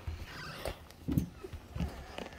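Footsteps on a concrete driveway: a few short, dull thumps of shoes striking the pavement while walking.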